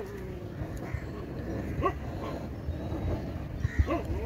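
A dog whining: one drawn-out, slightly falling call, then short yips about two seconds in and near the end, over a low steady rumble.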